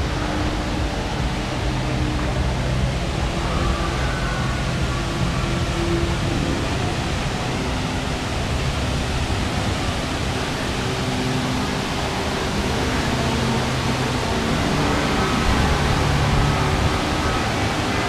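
Steady rushing of a large artificial waterfall, an even wash of falling water with faint background voices and tones underneath.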